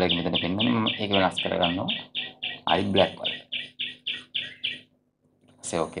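A rapid run of short, high bird chirps, about four a second, under a person talking for the first two seconds. The chirping stops about five seconds in, and a voice says a word near the end.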